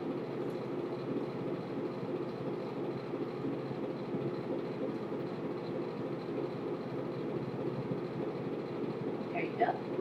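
A steady low hum of room background noise, with no distinct events; a woman's voice starts just before the end.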